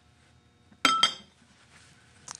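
White porcelain soup tureen lid set down on the tureen: a sharp ceramic clink about a second in, two quick strikes with a short ringing after.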